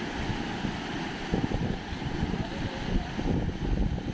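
Wind buffeting the microphone in irregular gusts over a steady rush of floodwater.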